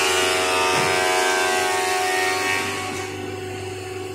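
Woodworking machinery running in a timber shed, a steady machine whine with a noisy hiss over it that eases off about three seconds in.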